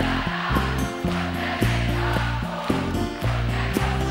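Live pop band playing, acoustic guitars over held bass notes, with a large crowd singing along in place of the lead singer.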